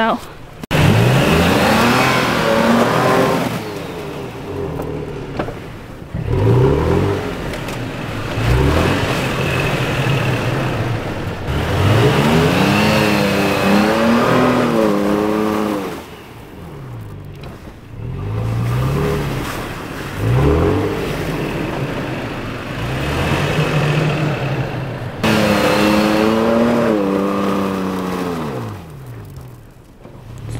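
Toyota Tacoma pickup's engine revving hard again and again, each rev rising and falling in pitch, as the truck tries to drive itself out of deep, slushy snow it is stuck in, its tyres spinning.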